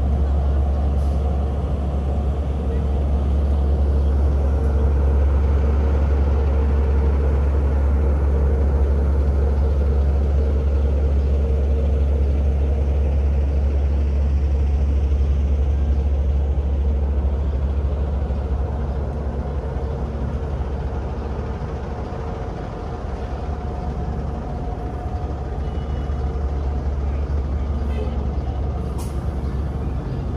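Steady low rumble of city road traffic and bus engines, with a faint steady hum over it; it eases a little in the last third.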